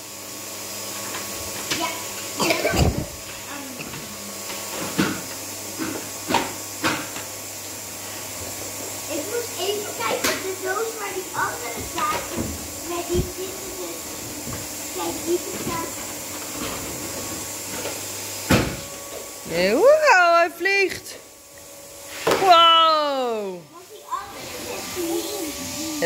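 Hard plastic pieces of an AquaPlay toy waterway set knocking and clicking as a small child handles a toy boat and truck on them. Near the end come two long sliding vocal sounds, the second falling steeply in pitch.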